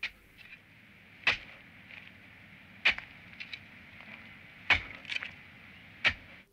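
Sound effect of a spade digging into soil: four sharp strikes about a second and a half apart, with lighter scrapes and clicks between them, over a faint steady background hiss.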